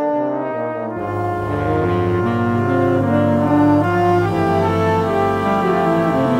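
Jazz orchestra playing slow, sustained chords led by its brass section. Deeper low notes join about a second in.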